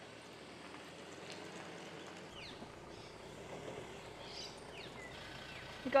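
Faint outdoor ambience with a few brief, faint bird chirps.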